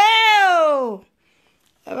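A woman's voice drawn out into one long sung-out vowel that rises and then falls in pitch, ending about a second in.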